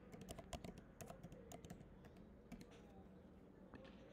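Faint computer keyboard typing: a quick run of keystrokes over the first couple of seconds, then a few scattered single key clicks.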